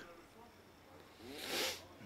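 A man's short breath close to the microphone: one hiss lasting about half a second, about a second and a half in, after a quiet stretch.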